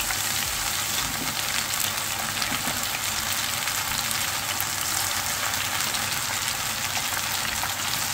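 Onion pakoras in gram-flour batter deep-frying in hot oil in a saucepan: a steady crackling sizzle.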